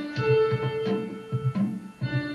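Loop-based electronic music playing back from Ableton Live: held synth notes over a steady repeating low beat.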